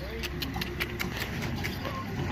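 A ram being led on a rope tether: a quick run of light clicks and taps, about five a second, over a steady low hum.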